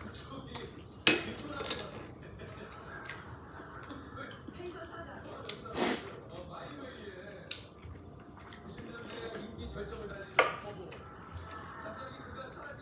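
Close-miked chewing of ramen noodles and rice cakes, with a few sharp clicks of chopsticks against the dishes: a loud one about a second in and another near the end.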